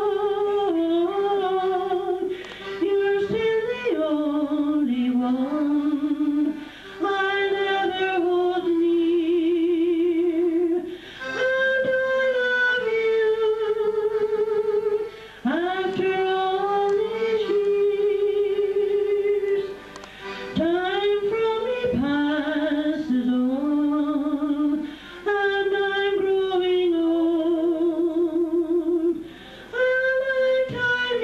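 An elderly woman singing solo and unaccompanied into a handheld microphone: slow phrases of a few seconds each with long held notes and a wide vibrato, a short breath between phrases.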